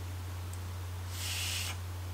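Air hissing through a Tauren RDA's airflow holes set about halfway open as it is drawn on: one short, quiet draw about a second in, without the squeak it has wide open.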